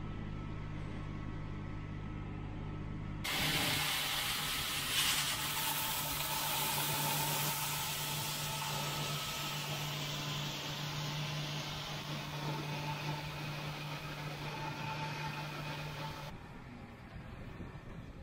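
A steady combine engine hum from inside the cab. About three seconds in it gives way to a loud, even hiss of shelled corn pouring from the combine's unloading auger into a grain trailer, with the engine's steady hum underneath. The hiss drops away shortly before the end as the grain flow stops.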